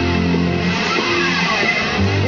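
Electric guitar playing a riff of sustained chords with a dense, gritty tone. The chord changes about two-thirds of a second in and again just past a second.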